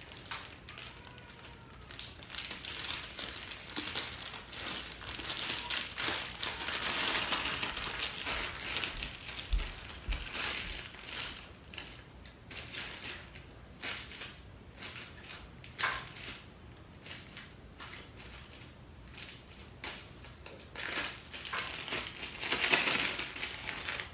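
Plastic Ziploc bag crinkling and rustling as it is handled and slime is pushed down into it by hand. The crinkling is irregular, busiest in the first half and again near the end.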